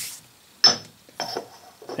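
Cast-aluminium mold half set down on a granite surface plate: a sharp clack with a short metallic ring about half a second in, followed by a couple of lighter knocks as it settles and is handled.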